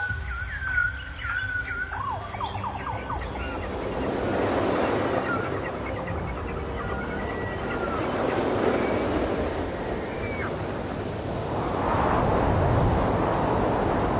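A few bird calls ending within the first two seconds, then ocean surf: a steady wash of waves that swells roughly every four seconds.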